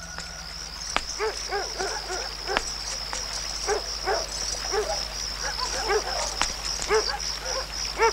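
Night ambience: crickets chirping steadily at a high pitch, with a dog giving about a dozen short barks at irregular intervals.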